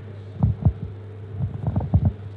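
Steady low electrical hum from the microphone and PA system, with about five soft, dull low thumps scattered through it.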